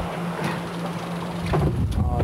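A boat's engine running with a steady low drone, under a haze of wind and sea noise, with a low rumble rising near the end.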